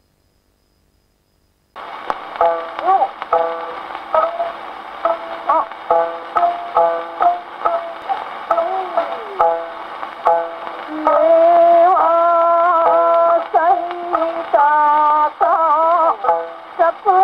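Acoustic Victor gramophone playing a Taisho-era acoustically recorded Nitto shellac disc of kouta at 80 rpm. The record begins about two seconds in with surface hiss and a run of short plucked notes, some sliding in pitch. Longer held sung notes take over about eleven seconds in.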